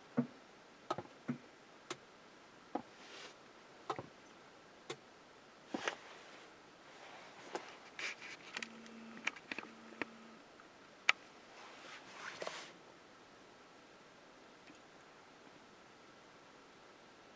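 Scattered sharp ticks and clicks from a Tesla while a software update installs, with two short low hums near the middle and a few soft rustles.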